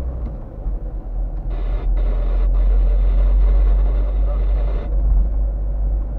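Low steady rumble of a car's engine and tyres heard from inside the cabin while driving. A hiss starts about a second and a half in and stops near five seconds.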